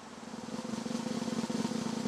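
Snare drum roll, rapid strokes swelling gradually louder: a suspense drum roll leading up to an announcement.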